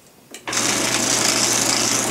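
A Fellowes 2331S strip-cut office shredder's continuous-duty motor starting about half a second in, then running steadily with a low hum and a hiss from the cutting head.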